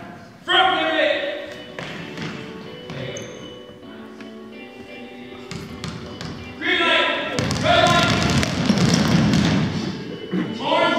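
Basketballs bouncing on a hardwood gym floor: scattered single bounces at first, then many balls bouncing at once in a dense patter over the last few seconds.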